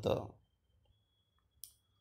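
The end of a man's spoken word, then quiet with a single short, sharp click about a second and a half in.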